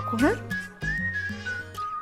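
A whistled tune of slow, held notes, rising and then falling back, over background music with a steady low bass line.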